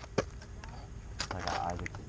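A single sharp click, then a short stretch of indistinct voice about a second in, over a steady low rumble on the microphone.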